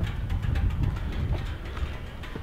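A C6 Corvette Z06 ticking away, a few faint ticks over a low, uneven rumble.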